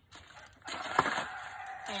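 Granular triple-13 fertilizer rattling and shifting in a plastic pan, starting a little over half a second in, with a sharp tick about a second in. A rooster crows in the background.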